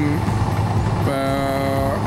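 Steady low engine rumble of a bulldozer working in the distance. About a second in, a man's voice holds a long, level hesitation sound.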